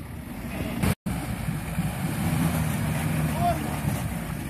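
4x4 engines revving hard under load with wheels spinning in mud and slush, as one off-roader pulls a stuck SUV out on a tow strap. The sound drops out for an instant about a second in.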